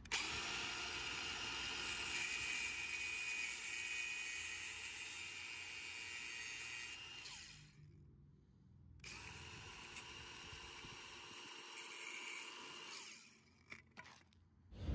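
A small power tool runs in two steady spells, about seven seconds and then about four, with a short stop between, as it cuts down the ground strap of a spark plug.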